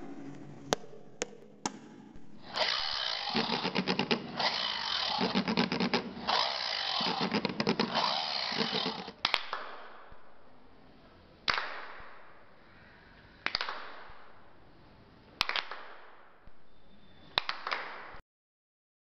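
A rasping, buzzing cutting noise like a power saw, in several long stretches, for trees being cut down. Then four sharp knocks about two seconds apart, each dying away.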